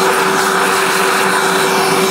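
Vacuum cleaner running with its hose nozzle in the burr chamber of an espresso grinder, sucking out stale coffee grounds: a loud, steady rush of air with a steady whine over it.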